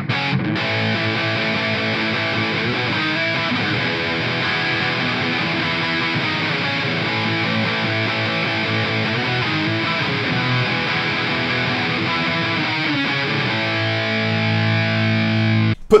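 Distorted electric guitar playing a rock riff built on octaves. Near the end it settles on a held note that cuts off suddenly.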